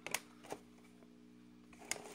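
Clear plastic blister packaging being handled, giving three short sharp clicks: one just after the start, one about half a second in and one near the end. A faint steady hum runs underneath.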